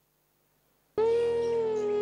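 About a second of near silence, then a flute starts a single long, steady note: the opening of the closing music.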